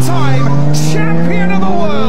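A racing car engine sound climbing slowly and steadily in pitch, loud, with a voice speaking over it.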